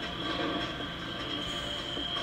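Tattoo machine buzzing steadily with a thin high whine, heard as playback through a TV speaker.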